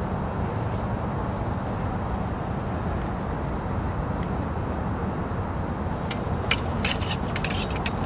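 Steady outdoor background rumble of wind and distant traffic, then, about six seconds in, a quick flurry of light metallic clicks from smallsword blades striking and sliding against each other in a fencing exchange.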